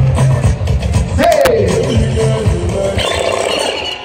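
Loud live concert music from a stage PA, with a heavy bass beat and a voice over it, heard from within the crowd.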